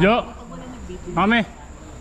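A man's voice: a brief loud exclamation falling in pitch right at the start, then a short spoken word about a second in. A faint steady high-pitched tone runs underneath.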